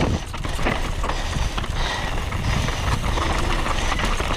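Downhill mountain bike ridden fast over rocks and dirt: tyres crunching and the bike's chain, frame and suspension rattling with constant small knocks, over a steady low rumble of wind on the microphone.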